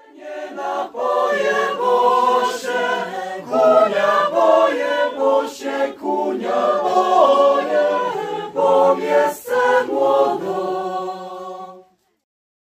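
A choir singing a cappella: several voices in harmony, sung in phrases with short breaks. It starts abruptly and cuts off just before the end.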